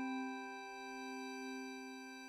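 A held electronic synthesizer chord, the tail of a short opening music sting, fading slowly.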